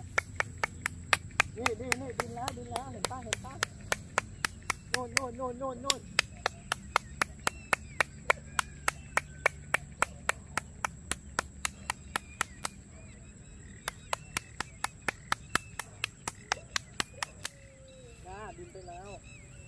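Hands clapping loudly in a quick, steady rhythm, about four claps a second, to call egrets to come closer. The clapping stops for about a second some thirteen seconds in, then resumes until just before the end.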